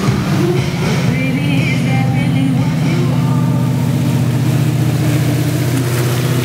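Towboat engine running at a steady speed, with a pop song with singing playing more faintly over it.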